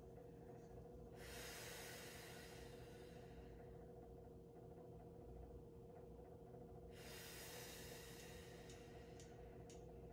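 Near silence over a steady faint hum, with two long, breathy breaths during a held stretch, one starting about a second in and one about seven seconds in, and a few faint clicks near the end.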